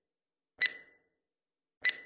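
Two short electronic countdown beeps, about a second and a quarter apart, in dead silence.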